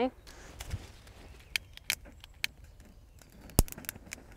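A few sharp, scattered clicks and crackles as dry straw and kindling are lit with a hand lighter, with one louder snap near the end.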